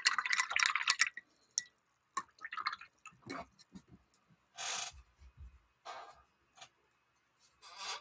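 Paintbrush swished and tapped in a glass jar of rinse water: a quick run of clinks and small splashes for about the first second, then scattered light taps and rustles.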